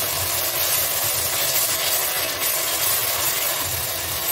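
Blended green spice paste sizzling steadily in hot oil in a pressure-cooker pan while it is stir-fried with a wooden spatula: the base masala frying off its raw smell.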